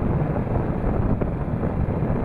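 Wind buffeting the microphone of a rider on a moving Yamaha motorbike, with the bike's engine and road noise underneath as it cruises at about 40 km/h. The rumble stays steady throughout.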